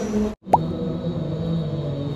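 A man's voice chanting in long held notes, in the manner of Quran recitation. The sound cuts out briefly less than half a second in, and then there is a short sharp click.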